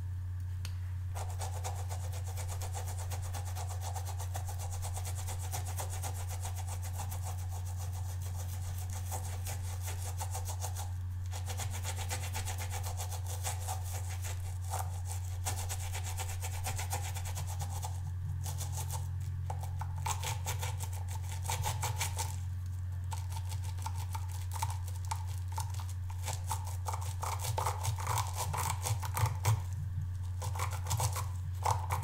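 A synthetic-bristle watercolour brush scrubbed rapidly back and forth on the ridges of a wet silicone brush-cleaning pad, a fast, steady rubbing that pauses briefly a few times, over a steady low hum.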